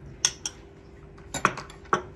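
A metal spoon and a small glass dish clinking and being set down on a countertop: several sharp clinks, a pair near the start and a few more in the second half.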